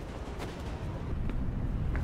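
A low, steady rumble that slowly grows louder, with a couple of faint clicks, from a TV drama's soundtrack.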